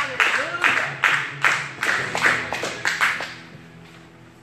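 Congregation clapping in a steady rhythm, a little over two claps a second, along with music and voices, dying away a little after three seconds in.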